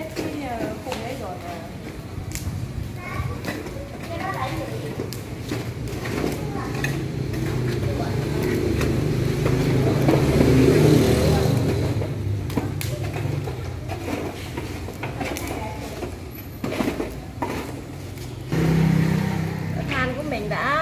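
Small electric fan running at a charcoal grill, a steady rushing of air and motor hum that swells loudest about halfway through, with children's voices in the background.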